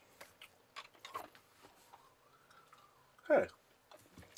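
Faint chewing of a bubble gum ball with a cracked sugar shell: a few soft, short clicks in the first second or so. A brief spoken "Hey" comes near the end.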